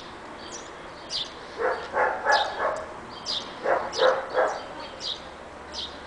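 Siberian husky puppies yipping as they play, in two short bursts of three or four yips, about two seconds in and again about four seconds in. A bird chirps over and over throughout.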